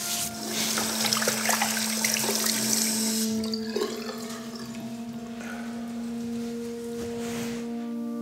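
Water running from a tap into a bathroom sink for about three seconds, then softer splashing as water is cupped onto the face.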